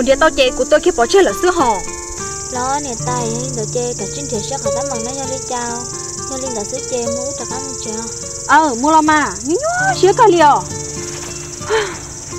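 Steady, unbroken high-pitched buzz of insects in dry grassland, running under two women's voices talking and soft background music with held notes.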